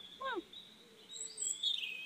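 Birds chirping with thin, high whistles through the second half, after a single short falling call right at the start.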